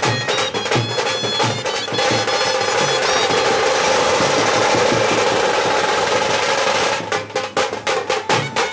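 Procession band music: a stick-played drum beating a rhythm under a reedy wind instrument's melody. From about two seconds in, the drumming becomes a continuous roll under held notes, and separate beats return near the end.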